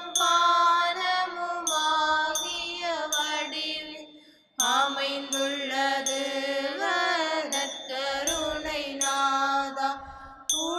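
A slow, chant-like devotional hymn: a single voice holding long, wavering notes with slides between them. It breaks off briefly about four and a half seconds in, then resumes.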